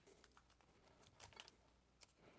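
Near silence, with a few faint, light clicks a little over a second in.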